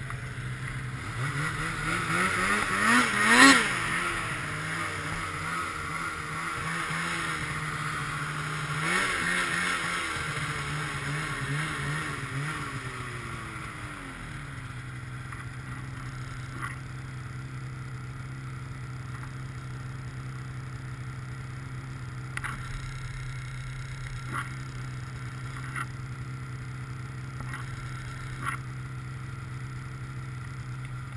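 Snowmobile engine revving up and down twice. About 14 seconds in it drops in pitch and settles to a steady idle, with a few light clicks over it.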